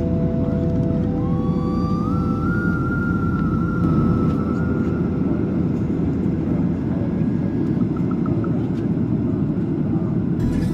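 Jet airliner cabin noise in descent: a steady, loud rumble of engines and rushing air, with a faint whining tone that rises about a second in and then holds.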